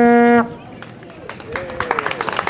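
Long straight wooden horn (a Scandinavian lur) blown on one long, low held note that stops about half a second in. Quieter voices follow.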